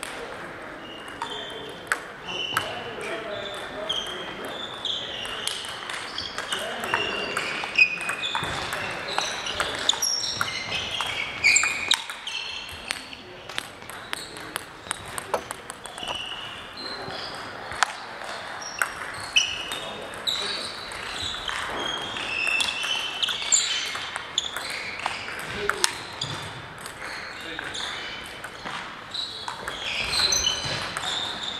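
Table tennis balls ticking on tables and bats, many short irregular pings at differing pitches overlapping throughout, with indistinct voices in the background.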